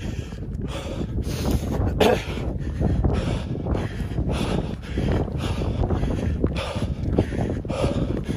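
Wind buffeting the microphone with a steady low rumble, mixed with the heavy, open-mouthed breathing of a man running hard.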